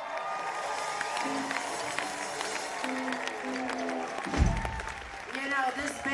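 Audience applauding and cheering at the end of a rock song while the band's last notes ring out, with a single low thump about four seconds in.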